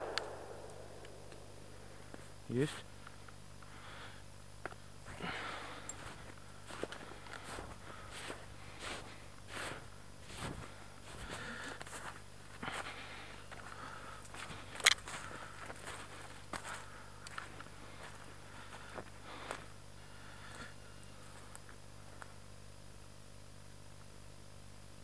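Footsteps and rustling through forest floor litter, irregular crunches about once a second, with a short spoken word early on and one sharp knock about 15 seconds in.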